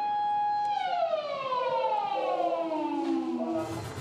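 A beach shark alarm siren holds a steady tone, then winds down, its pitch falling steadily for about three seconds. It is the signal for swimmers to get out of the water after a confirmed shark sighting.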